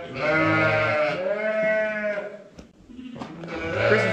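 Sheep bleating in the barn: one long bleat lasting about two seconds, then a shorter, fainter one near the end.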